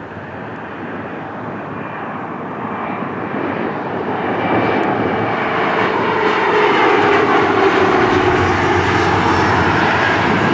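Twin rear-engined regional jet on final approach with its landing gear down, engine noise growing steadily louder as it comes in low and passes, with a whine that falls in pitch as it goes by.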